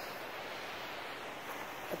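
Steady rushing of a seasonal snowmelt waterfall, an even, unbroken hiss of running water.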